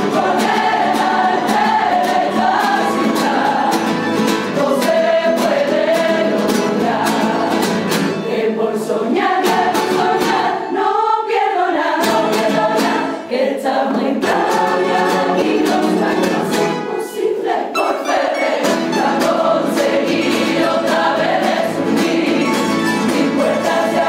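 A Cádiz carnival coro, a large mixed choir, singing in chorus over strummed and plucked Spanish guitars and bandurria-type lutes, with brief breaks between phrases.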